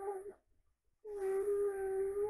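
A young child moaning in long, steady-pitched cries, unwell and distressed. One moan trails off a third of a second in, and another starts about a second in and is held.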